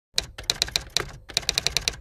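Typewriter-style typing sound effect: a rapid, uneven run of sharp key clicks, with a short pause just past the middle.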